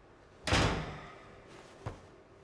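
A door shutting with a sudden, loud impact about half a second in that dies away quickly, followed near the end by a short, fainter knock.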